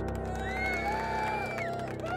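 Grand piano's last chord ringing out on the sustain pedal. A high, drawn-out whooping voice sounds over it from about half a second in.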